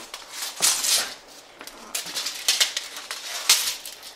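Tape measure being pulled out and handled, its long blade moved into place: a series of short scraping, rustling bursts, the loudest about three and a half seconds in.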